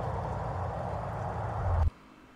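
Steady roadside background noise picked up by a police body camera, with a low rumble that swells just before it cuts off suddenly near the end.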